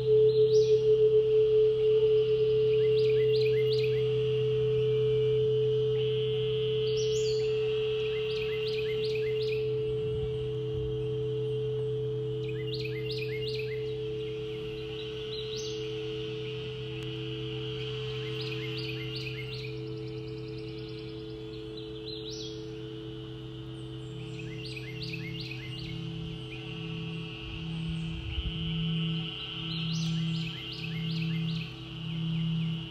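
Crystal singing bowls ring in long, overlapping sustained tones, a deep one and a higher one, slowly fading. Further bowls join with a wavering, pulsing tone about ten seconds in and again near the end. Above them, a bird's chirping phrase repeats every few seconds.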